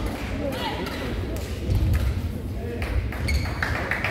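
Badminton rally: a few sharp racket hits on the shuttlecock, with court-shoe squeaks in the last second, over the murmur of voices in an echoing sports hall.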